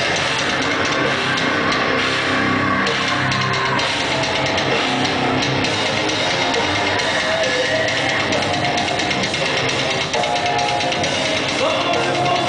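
A live metalcore band playing: electric guitar and a drum kit in a loud, dense mix that holds steady throughout.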